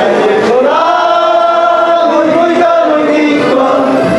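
A group of men singing together, holding long drawn-out notes that bend slowly in pitch.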